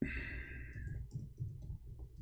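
Faint clicking of a computer keyboard and mouse as a web search is typed in, over a low rumble, with a short breathy hiss in the first second.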